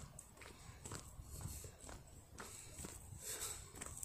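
Faint footsteps of a person walking, about two steps a second, over a low rumble.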